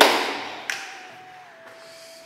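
A single loud thump that dies away over about a second, a sharp tap just after half a second in, then a faint steady tone.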